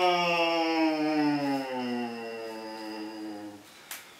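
A man imitating a motorbike engine with a closed-mouth hum, one long drone whose pitch slowly falls as if the bike is slowing down, dying away near the end. A brief sharp click follows it.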